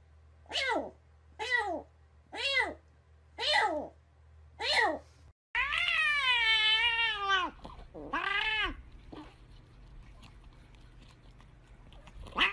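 A spotted kitten meows into a bowl of water: five short meows falling in pitch, about one a second. After a cut, a grey-and-white cat gives one long meow and then a shorter one.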